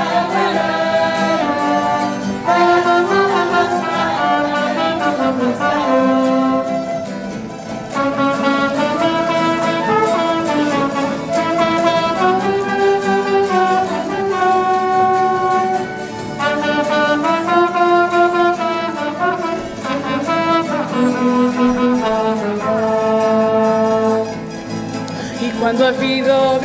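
Instrumental music from a carnival bailinho band, a melody of held notes moving up and down, playing between sung verses.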